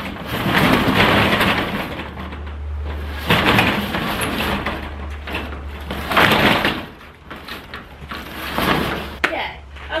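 Corrugated metal roll-up door of a portable storage container being unlatched and raised by hand, rattling in several loud surges over a low rumble.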